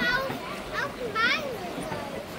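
High-pitched children's voices calling out and chattering, with two louder shouts: one at the start and one just past the middle.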